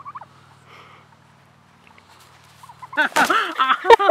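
Domestic tom turkey gobbling loudly about three seconds in, a rapid warbling rattle, with sharp flapping and scuffling as it jumps onto a seated man with its wings spread. Before that it is fairly quiet, with only a faint low hum.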